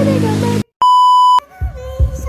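A loud, steady electronic bleep at a single pitch, about half a second long, cut in abruptly after the music drops out, like a censor-bleep sound effect used as an editing gag.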